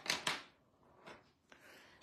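A brief papery rustle and scrape, about half a second long at the start, from a paper drawing tile and a pencil crayon being handled, then only a faint hiss.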